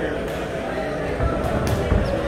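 Boxing gloves landing punches, three sharp thuds in the second second, the last the loudest, over an indistinct murmur of voices around the ring.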